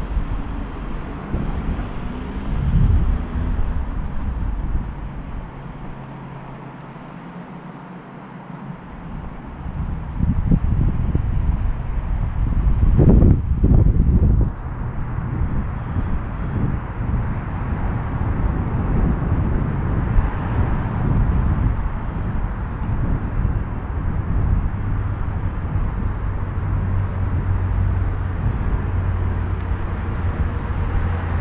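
Outdoor town ambience: an uneven low rumble, quieter for a few seconds about a quarter of the way in and loudest around the middle.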